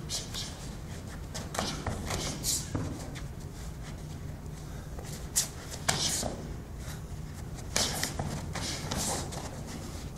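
Bare feet shuffling on gym mats and karate gi fabric swishing during full-contact sparring, with a scattering of short slaps and thuds from punches and kicks landing, the loudest a pair of hits a little past the middle.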